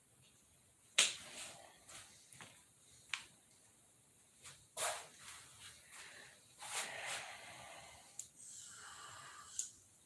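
Masking tape being handled and pulled off its roll: a few sharp clicks and short rustles, then a rasp of about a second near the end as a length of tape is unrolled.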